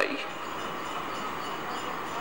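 Steady, even background noise with no change in level, as the last syllable of a spoken word fades out right at the start.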